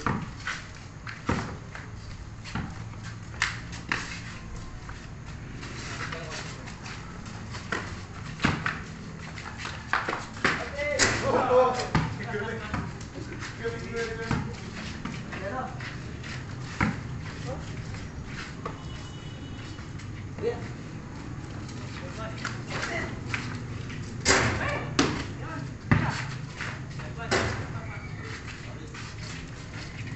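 A basketball bouncing and thudding on a concrete court at irregular intervals as it is dribbled and played, with a few louder hits scattered through.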